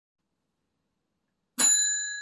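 Silence, then about one and a half seconds in a single bright bell-like ding that keeps ringing.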